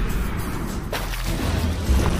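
Sound-designed firing effect for a gel bead blaster: a rush of noise with a sharp crack about a second in, over music, with a deep bass swell coming in near the end.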